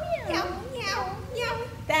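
Women's voices imitating a cat, calling three high "meow"s that each slide down in pitch, sung as part of a children's song.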